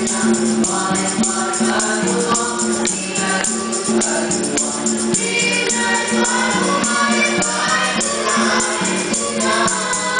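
A boys' nasyid group singing in harmony over a steady, bright percussion beat.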